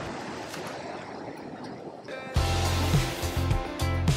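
Ocean surf washing against a rock pool, a steady rushing noise. About two seconds in, background music cuts in loud with a heavy beat.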